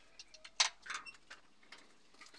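Light metallic clicks and taps of a screwdriver against the spark plug wells of a BMW N13 cylinder head, a few separate clicks with the loudest about half a second in.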